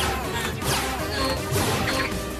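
Cartoon soundtrack: background music with laser-blast sound effects, including two falling swooshes in the first second.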